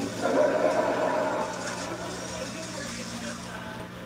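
Indistinct background voices, loudest in the first second or so, over a steady low hum.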